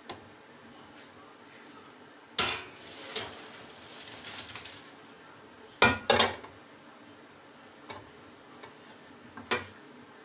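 Boiled rice and its cooking water poured from a metal pot into a steel colander to drain: a clank as the pot meets the colander, a rush of pouring for two or three seconds, then two loud clanks of metal on metal about six seconds in and one more near the end.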